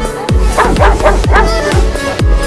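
Electronic dance music with a steady kick-drum beat, over which a puppy gives a quick run of short barks and yips about halfway through.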